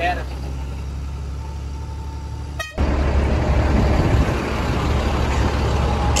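Truck engine running steadily, heard from inside the cab, with a faint held horn note for about a second. About three seconds in, the sound cuts abruptly to louder, rougher street traffic noise.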